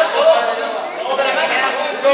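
Chatter: several people's voices talking at once in a large sports hall.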